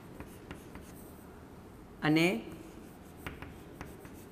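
Chalk writing on a chalkboard: irregular light taps and scratches of the chalk as a word is finished and an arrow drawn.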